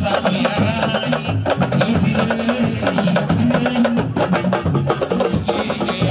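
Ensemble of sabar drums playing a fast, dense dance rhythm: rapid sharp strokes over deeper pitched drum tones.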